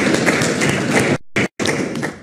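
Audience applauding, a dense patter of hand claps. The sound dips and drops out briefly about a second in, then returns and cuts off abruptly.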